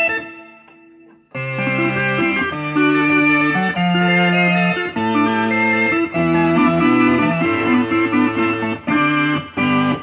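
Oberheim OB-SX polyphonic analogue synthesizer playing sustained chords on an organ preset, moving to a new chord every second or so. A chord dies away at the start, and the playing resumes about a second later.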